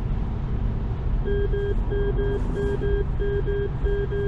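A Tesla Model 3 warning chime beeps in quick pairs, about one pair every two-thirds of a second, starting about a second in. It is the car's emergency lane-departure alert telling the driver to take over the steering. Underneath runs steady road and tyre noise heard inside the cabin at motorway speed.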